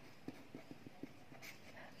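Faint strokes of a pen writing on a paper notebook page, heard as a run of soft short ticks, several a second.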